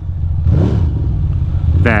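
Ducati Monster 620's air-cooled V-twin running at low speed in traffic, its pitch rising and falling briefly about half a second in.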